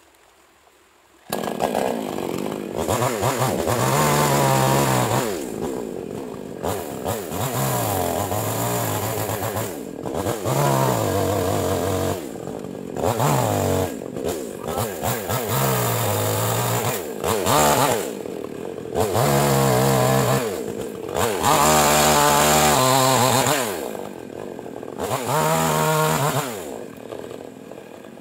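Yamamax Pro mini chainsaw, a small two-stroke petrol saw, revving up and dropping back over and over as it cuts through a log. It starts about a second in, and it falls to a lower idle between cuts several times.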